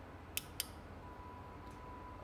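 Two short, sharp plastic clicks about a quarter second apart from the front-panel controls of a Novastar VX4S-N LED video controller, as the menu knob and back key are worked to step back through the menu.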